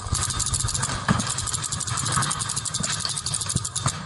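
Hopper-fed paintball marker firing a rapid, unbroken stream of shots, many a second, starting abruptly and stopping near the end.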